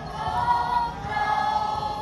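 A mixed choir of girls and boys singing long held chords, the chord changing about a second in.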